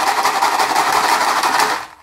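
Small white chocolate balls rattling fast and hard inside a closed plastic container as it is shaken to coat them in edible glitter powder. The rattling stops abruptly near the end.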